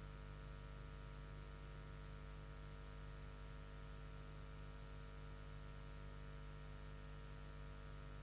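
Steady, low-level electrical mains hum with many overtones over a faint hiss.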